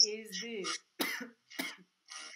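A man speaking over a video call, then two short coughs about a second and a second and a half in.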